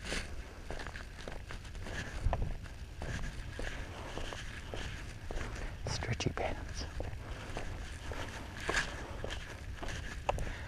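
Footsteps of someone walking on an asphalt road, irregular scuffs and light clicks over a low rumble on the body-worn camera's microphone.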